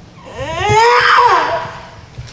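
A young person wailing in one long crying cry that rises in pitch, holds and then falls away.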